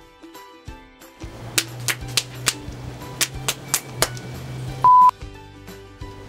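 Background music, giving way about a second in to a run of sharp clicks over a low steady hum. Near five seconds a short, loud, pure beep tone sounds once.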